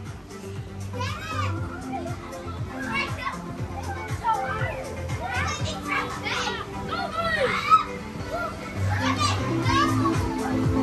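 Children shouting and squealing as they bounce inside an inflatable bounce house, over background music with a steady low beat. Scattered thuds of jumping, with one sharp knock a little before the end.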